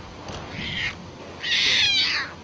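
Tiger cubs less than a month old crying with high-pitched mewing calls: a fainter cry about half a second in and a louder one near the end.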